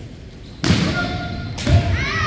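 Kendo sparring on a wooden gym floor: two loud attacks, the first about half a second in and the second near the end. Each is a stamping-foot thud with a held shout.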